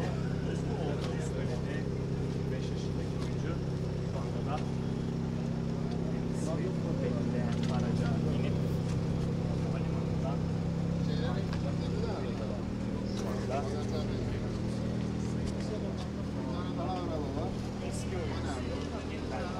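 A car engine idling steadily, its low hum shifting slightly in pitch about twelve seconds in, under the chatter of people close by.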